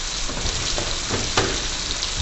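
Finely sliced onion frying in oil in a frying pan over a flame just turned low: a steady sizzle. A few light clicks of the spatula against the pan as the onion is stirred.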